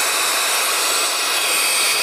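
Cockpit crew oxygen mask switched to its EMER setting, oxygen rushing through it in a loud, steady hiss: the preflight test that oxygen flows from the supply.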